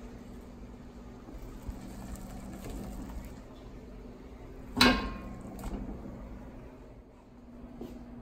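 Golden beets handled and dropped into a stainless steel pot of boiling water. There is one sharp knock with a brief metallic ring about five seconds in and a lighter click just after, over a steady low hum.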